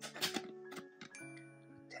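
Background music with light clicks of hard plastic graded-card slabs knocking together as they are shuffled: a cluster of clicks in the first half second and a couple more around a second in.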